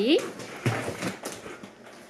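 Handling noise from grocery containers: a few soft knocks about a second in, as a plastic jar is picked up and items are set down, then faint rustling.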